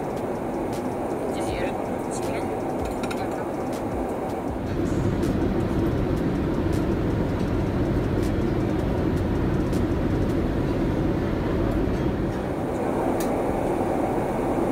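Steady rushing hum of a Boeing 787-8 airliner's cabin, growing louder about five seconds in.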